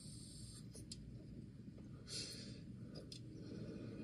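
Faint breathing as two people draw on disposable vapes and exhale: soft airy breaths near the start and again about two seconds in, over a steady low rumble, with a few small clicks.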